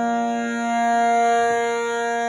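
Harmonium reeds sounding steady, long-held notes, several keys pressed together.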